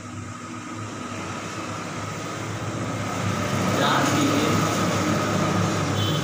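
A passing vehicle's rumble, swelling louder over about four seconds and then holding steady.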